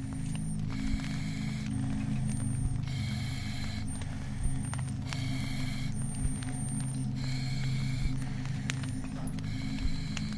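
Industrial sound effects: a steady low hum under creaking, clanking mechanical noises, with a sharp knock about every two seconds.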